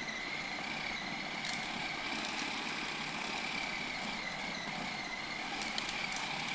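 Food processor motor running steadily under load with a high whine, its blade chopping raw meat into a smooth paste for chả.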